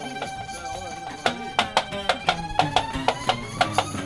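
Live acoustic band music with no singing. A violin holds one long note that slowly slides upward, while strummed acoustic guitar and tambourine hits keep a rhythm of about three strokes a second from about a second in.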